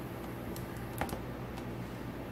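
A few short, light clicks and snaps, the loudest about halfway, from rubber bands being wound and snapped around a crumpled cotton shirt.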